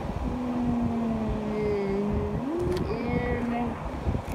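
A child's voice holding one long, steady note for about two seconds, then sliding up and settling on a second held note, with no words.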